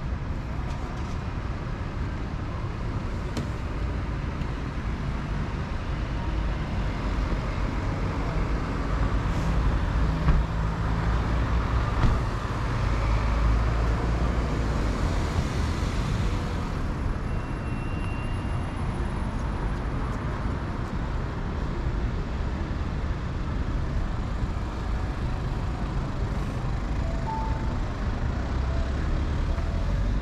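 Street traffic noise with a steady low rumble; about halfway through, a car passes close by, its sound swelling and then fading.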